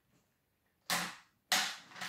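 Scissors snipping through a clear plastic blister pack twice, two sharp cracks about half a second apart.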